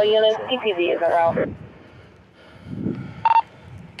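A man talks for about the first second and a half. Near the end a short, single-pitched electronic beep sounds once.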